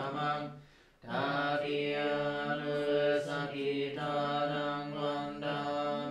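Theravada Buddhist monks chanting in Pali at morning puja, a low recitation on long held notes. The chant breaks off briefly just before a second in, then resumes with short pauses between phrases.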